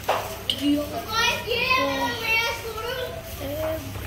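Young children's voices chattering and calling out, high-pitched, busiest in the middle stretch.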